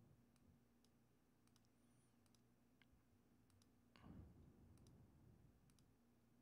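Near silence with a run of faint, separate computer mouse clicks as the pages of a photo book preview are stepped through, and a faint soft noise about four seconds in.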